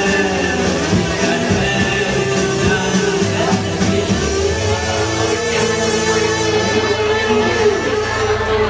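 Live rock band playing the closing instrumental bars of a song on electric guitar, bass guitar, drum kit and keyboard; from about three seconds in the low notes and chords are held steadily.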